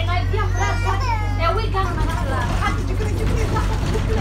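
Passengers' voices chattering inside a moving bus over the steady low drone of its engine.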